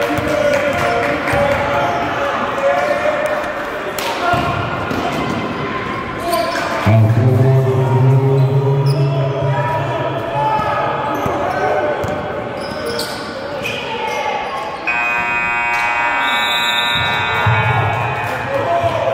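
Basketball dribbling and bouncing on a gym floor, with players and bench voices calling out. About fifteen seconds in, a scoreboard buzzer sounds for about two seconds as the game clock runs out, ending the period.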